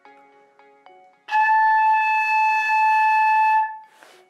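Flute head joint blown on its own: one steady, breathy high note, starting just over a second in and held for about two and a half seconds.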